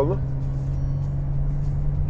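Steady low drone of an Audi A5's engine and road noise, heard from inside the cabin while driving.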